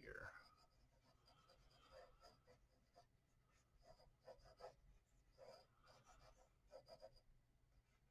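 Faint scratching of a pencil drawing on paper, short strokes coming in small clusters.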